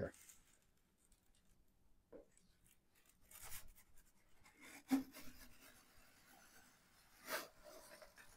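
Sliding pizza peel pushed along a floured countertop under a pizza: faint scraping and rubbing, with a light knock about two seconds in and another about five seconds in.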